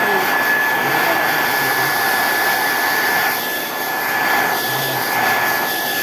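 Gaabor GHD N700A hair dryer running steadily, a constant rush of blown air with a steady high whine on top.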